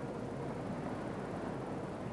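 Steady background noise of an industrial cell room: an even rush with a faint low hum and no distinct events.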